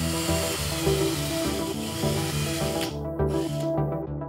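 Cordless drill running for about three seconds, stopping, then running again briefly near the end, over background music.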